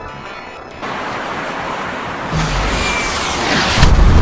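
A noisy rush building for about three seconds and growing louder, then a sudden loud explosion blast near the end.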